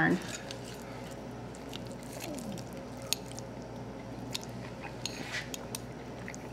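Forks tapping and scraping faintly on plates and soft chewing, a scattering of small clicks over a steady low room hum.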